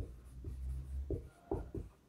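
Marker pen writing on a whiteboard: a run of short, separate strokes of the tip on the board.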